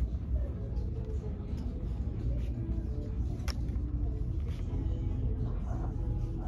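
Store ambience picked up by a phone held while walking: a steady low rumble with faint, indistinct background sounds over it, and one sharp click about three and a half seconds in.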